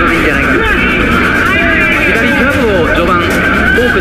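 Japanese television commentary on a boxing match, with the arena crowd's noise running steadily beneath it.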